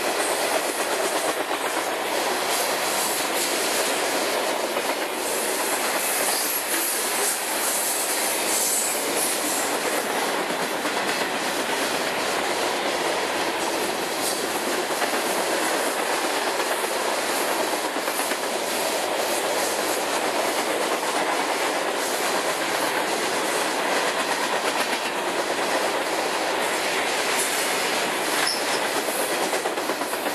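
Freight train of tank cars rolling past close by: a steady, loud noise of steel wheels running on the rails, with a clatter as the wheels pass over the rail joints.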